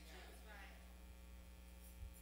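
Near silence: a faint, steady electrical mains hum, with the last word's reverberation dying away at the start.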